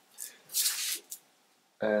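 Short scraping rustle of a plastic ruler and paper being moved over a wooden desk while a template is marked out, followed by a light tap about a second in.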